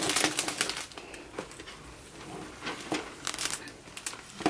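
Clear plastic wrap crinkling as it is handled around a basket, busiest in the first second and then down to scattered crackles.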